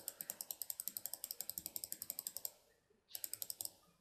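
Rapid, evenly spaced computer mouse clicks, about ten a second, as a spin button is clicked over and over. They pause about two and a half seconds in and resume briefly near the end.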